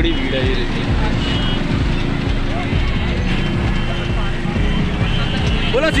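Slow, congested road traffic: vehicle engines, including the motorbike being ridden, running close by with a steady, loud rumble, and voices of the surrounding crowd.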